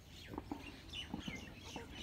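Faint bird calls: a few short, falling chirps in the second half.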